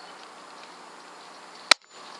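A single air rifle shot: one sharp, short crack near the end, fired at a rabbit in the crosshairs.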